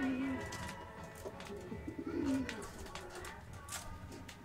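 The end of a ballad playing from a vinyl record on a turntable, fading out, with surface crackle and clicks from the groove. Two short low warbling sounds stand out, one at the start and one about two seconds in.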